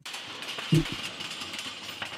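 Steady background hiss of room noise, with one short dull thump about three-quarters of a second in.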